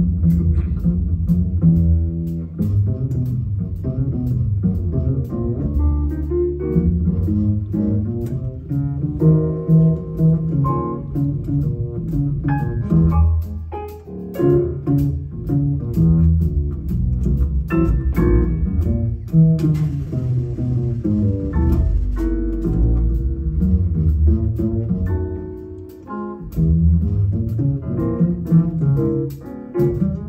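Upright double bass played pizzicato in a live jazz trio, carrying the lead in low walking and melodic lines, with light piano and drum accompaniment. The playing eases off briefly about halfway through and again near the end.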